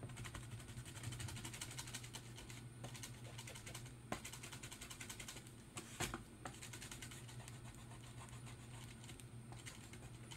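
Eraser rubbing on a painted canvas to remove graphite pencil lines: fast, light scratchy back-and-forth strokes, with a few sharper ticks about four and six seconds in.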